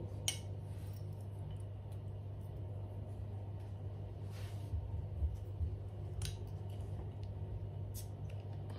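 A bottle of 11% Russian imperial stout being opened: a few faint clicks and a very light, brief hiss about four and a half seconds in. The barely audible hiss is a sign of the beer's low carbonation.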